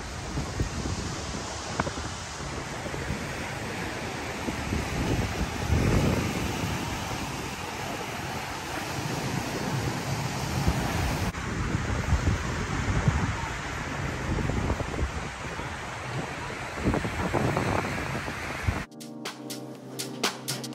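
Small waves breaking on a sandy beach, with wind gusting on the microphone. Near the end it cuts abruptly to background music.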